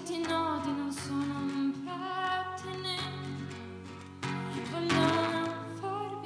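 Live solo song: a woman singing over her own strummed acoustic guitar.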